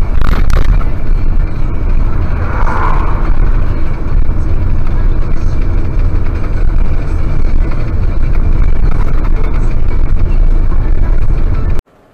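Steady engine and road noise of a moving truck, recorded by a dashcam inside the cab, loud and low-pitched, cutting off abruptly near the end.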